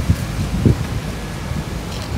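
Wind buffeting the microphone of a handheld camera, coming as irregular low gusts.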